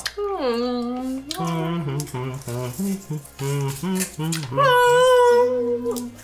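Laughter, then a voice singing mock orchestral notes: a falling note at the start, a run of short notes, and one loud long held note near the end.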